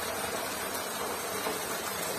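Steady rush of water pouring from two stone spouts, a cow's mouth and an elephant's mouth, and splashing into a temple tank pool.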